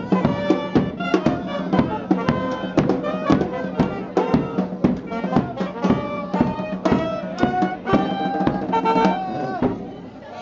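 Brass band playing a lively tune, with tuba, saxophones and clarinet over a steady drum beat; the tune stops right at the end.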